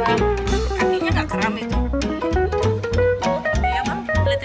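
Background music with a steady bass line and drum beat.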